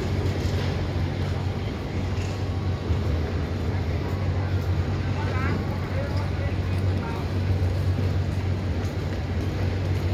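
Street ambience: a steady low hum of road traffic, with snatches of passers-by's voices in the background.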